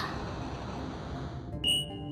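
A single short, high electronic beep near the end, over quiet background music.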